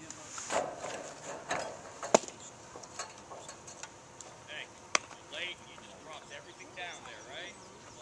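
A pitched baseball smacking into the catcher's mitt, one sharp pop about two seconds in, followed near the five-second mark by a second sharp smack. Scattered spectator voices and shouts sound around them.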